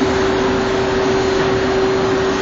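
Ship's machinery running: a loud, steady drone with a constant mid-pitched hum.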